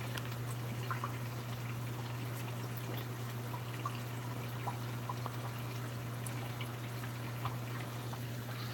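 Aquarium sponge filter bubbling with faint scattered drips and pops, over a steady low hum.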